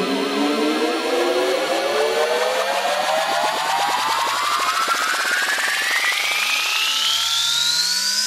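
Electronic trance music at a build-up: a buzzy synth sweep rises steadily in pitch, with no kick drum.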